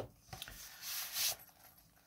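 Brief soft rustling and sliding of packaging as a faux-leather brush case is pulled out of its box, loudest about a second in.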